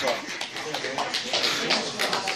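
Indistinct voices over a noisy, rustling background.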